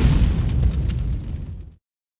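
Tail of an explosion sound effect in a logo intro: a deep rumble dying away, cut off abruptly a little before the two-second mark, leaving dead silence.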